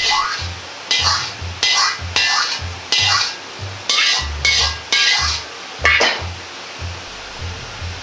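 Metal ladle scraping and stirring around a wok of hot oil, with a low knock at each stroke, about two strokes a second. A faint sizzle sits under the strokes, which die away about six seconds in.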